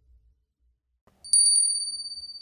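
A small, high-pitched bell struck a few times in quick succession about a second in, then left ringing and slowly fading.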